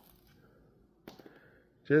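Near silence in a pause of a man's speech, with a faint short noise about a second in; his voice comes back with a word just before the end.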